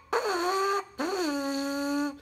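Lips buzzing into a trumpet mouthpiece on its own. There are two buzzed notes: a short one, then a lower, longer one starting about a second in, each sagging slightly in pitch at its onset. The buzz steps down in pitch as the lips are loosened, going from a tight, high buzz towards a lower one.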